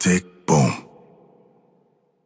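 Two short voice-like shouts about half a second apart, the second falling in pitch.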